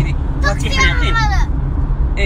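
Steady low rumble of a car heard from inside the cabin, under a woman's voice that speaks briefly near the middle, its pitch falling.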